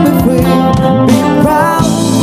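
A live band playing a soft-rock song: electric and acoustic guitars, bass guitar and keyboard over a drum kit, with bending melody notes.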